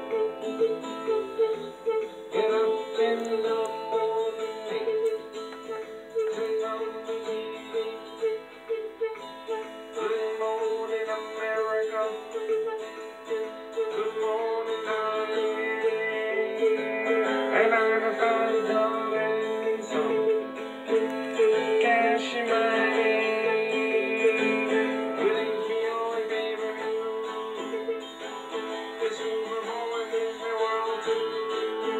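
A recorded song playing, with plucked acoustic guitar and a singing voice.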